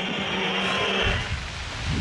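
Football stadium crowd whistling in disapproval: a dense, high mass of whistles over crowd noise. It cuts off a little after a second in, giving way to a low outdoor rumble.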